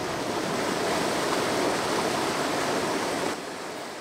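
Creek water pouring out of corrugated culvert pipes into a pool, a steady rushing churn of white water from the creek's returning flow. It turns somewhat quieter a little past three seconds in.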